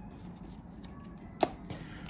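Trading cards being handled on a table: faint small handling ticks, with one sharp tap about a second and a half in.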